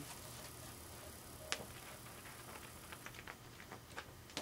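Faint handling sounds of a book being held up and opened: one sharp click about one and a half seconds in, then a scatter of faint ticks near the end.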